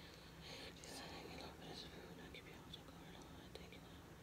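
A woman very faintly whispering a prayer of grace, in soft scattered hisses with no voiced words.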